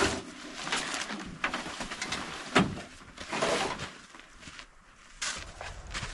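Nylon truck-bed tent fabric rustling and swishing in irregular bursts as it is pulled up over its poles, with one sharp click about two and a half seconds in.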